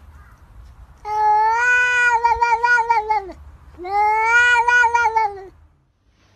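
Domestic cat giving two long meows, each about two seconds long with a short gap between, the pitch rising slightly and falling away at the end of each.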